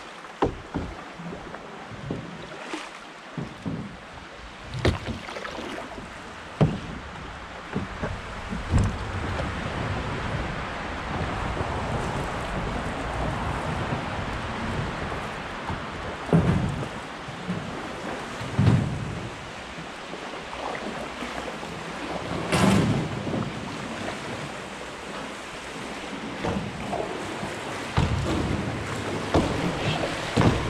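Fast, high river water rushing around a canoe and a bridge pier, a steady wash of water noise. Every few seconds comes a short sharp knock or splash from the canoe and paddle, the loudest a little after the middle.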